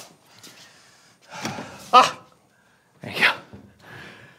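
A man gives a breathy sigh of relief ending in a short 'ah' about two seconds in, followed a second later by another short breathy exhale.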